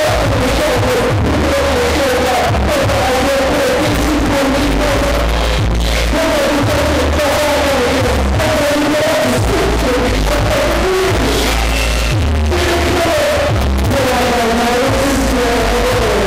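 Loud hip-hop music over a club sound system, with deep pulsing bass and a wavering melodic line on top.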